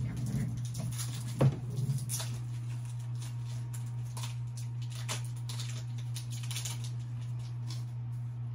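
Hands handling Pokémon trading cards just taken from a booster pack: soft rustles and light clicks, with one sharper snap about one and a half seconds in.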